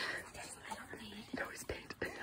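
Hushed whispering voices, with a couple of short clicks about one and a half seconds in.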